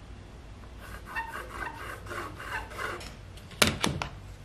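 Pencil scratching in short repeated strokes on a wooden boat stem along a batten, about four strokes a second, followed near the end by two sharp clicks.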